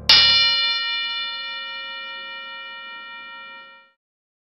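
A boxing ring bell struck once, ringing out with a bright, many-toned ring that fades slowly over nearly four seconds before stopping.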